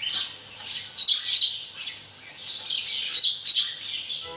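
Small birds chirping and tweeting, a quick run of short high calls, with the sharpest ones in pairs about a second in and again past the three-second mark.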